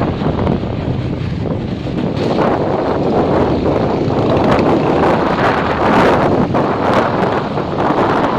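Wind rushing over the microphone of a phone carried on a moving motorcycle, with the motorcycle running underneath; the rush gets louder about two seconds in.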